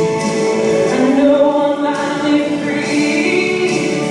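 A woman singing into a microphone, holding long notes.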